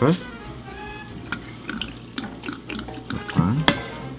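Apple Pucker liqueur poured from a bottle through a pour spout into a glass, a thin steady trickle, with a few light glass clicks.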